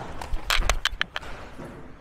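A catcher's quick footwork and gear as he springs out of the crouch and throws at full speed: a quick cluster of sharp clicks, scuffs and knocks from shoes on turf and rattling shin guards, about half a second to a second in.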